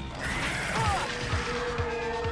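Animated-battle soundtrack: a sudden crash just after the start with a short falling whine, over dramatic score with deep booms about twice a second and a long held note coming in about halfway.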